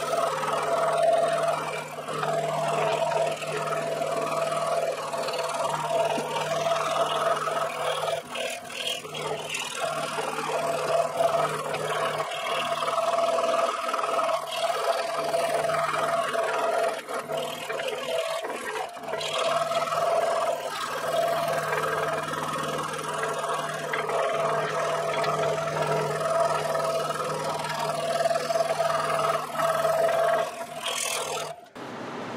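Scroll saw running steadily, its #12 blade sawing through a 1.5-inch-thick block of old pine on the first face of a compound cut.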